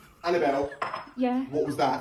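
Clinking of cutlery and dishes at a kitchen counter, with a man's startled voice reacting to a fake sneeze.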